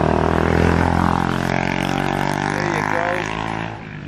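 A motor vehicle engine running with a steady low hum, fading away shortly before the end.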